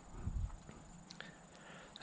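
Quiet outdoor background with a few faint soft footsteps and clicks, the firmest in the first half second.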